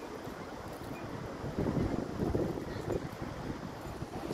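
Wind buffeting the microphone in uneven gusts over the steady rush of fast-flowing water from a lake spillway.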